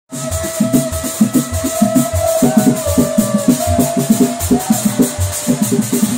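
Baikoko dance music: drums beating a fast, even rhythm of about three beats a second, with shakers and a long held note that wavers in pitch in places.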